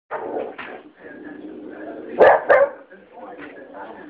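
A dog barks twice in quick succession, two loud, sharp barks a fraction of a second apart about halfway through.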